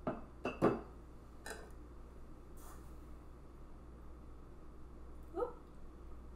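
Three or four light clinks of metal measuring spoons against glass as lemon juice is measured out, all in the first second and a half. A short rising tone follows near the end.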